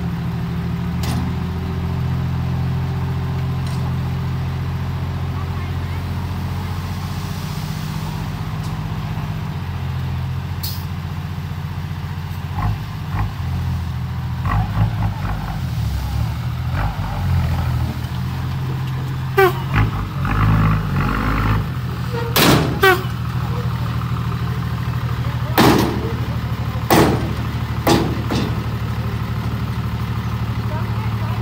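Dump truck's diesel engine running steadily while the tipper bed is raised to dump a load of soil. The engine note varies unsteadily through the middle. Several sharp knocks and bangs follow in the second half.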